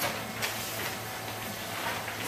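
Room tone in a pause between sentences: a quiet, steady hiss with a low hum underneath.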